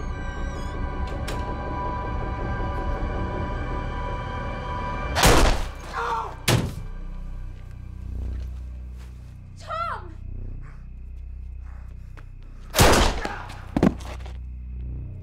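Tense film score of held tones, cut about five seconds in by a loud sudden hit and another a second later. A short wavering cry comes near the middle, and two more loud hits fall close together near the end.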